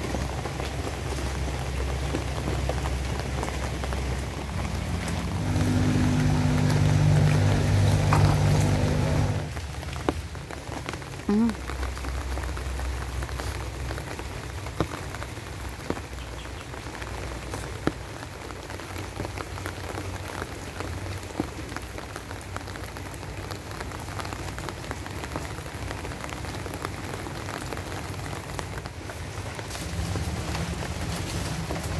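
Steady rain falling on leaves and ground, with scattered sharp ticks of drops. From about five to nine seconds in, a louder low drone with a few steady tones rises over the rain, then stops suddenly.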